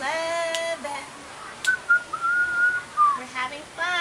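A person whistling one held high note for about a second and a half, ending in a short downward slide, between stretches of a drawn-out, sing-song voice.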